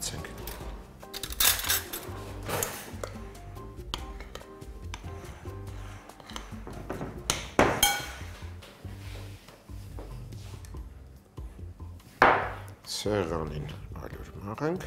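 A metal spoon clinking against a glass mixing bowl a few times as a batter is stirred, over steady background music. A short stretch of speech comes in near the end.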